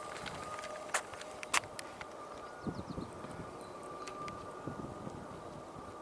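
Soft footsteps on a paved path with two sharp clicks about a second in, under a faint steady high-pitched tone.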